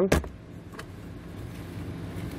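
Plastic lower dash trim panel on a Ford Ranger popping loose from its clips with one sharp snap just after the start, followed by a steady low hum and a few faint plastic ticks.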